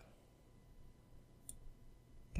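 Near silence with a faint computer mouse click about one and a half seconds in.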